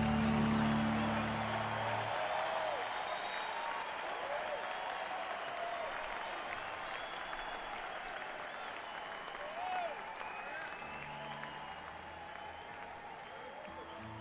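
Concert audience applauding and cheering as the band's final chord rings out for about two seconds, the applause then slowly fading. A few low instrument notes sound briefly near the end.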